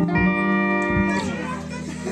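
Live rock band of electric guitars, bass and drums holding a closing chord with a few drum hits. The chord dies away about a second in, leaving a low amplifier note and voices.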